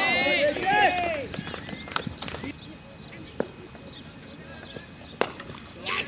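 Several cricketers shouting at once in high, strained voices for about the first second, then quieter outdoor ambience with scattered light knocks. A single sharp crack comes about five seconds in.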